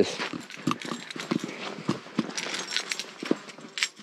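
Footsteps on a sandy, gritty trail: a string of irregular scuffing steps.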